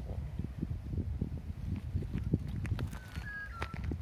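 Irregular light taps and crackles of movement in dry leaf litter, with a bird's short whistled call of a few held notes about three seconds in.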